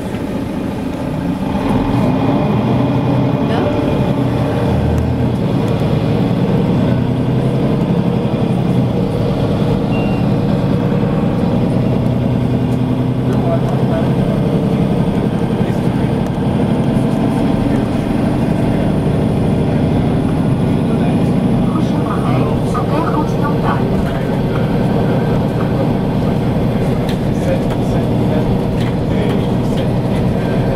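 Steady running noise of a moving vehicle heard from inside it: engine and road rumble, holding an even level throughout.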